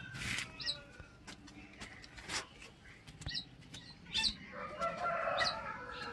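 Chickens calling: short high chirps every second or two, and a longer drawn-out call from about four and a half seconds in. A few light clicks sound among them.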